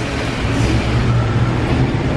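A motor vehicle running close by: a steady low engine rumble with road noise over it.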